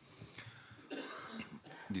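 A person coughing in a few short bursts during a pause in talk, about half a second and a second in.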